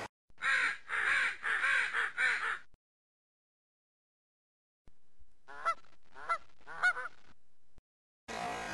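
Honking calls: a quick run of about four short honks, then after a pause of about three seconds, three more.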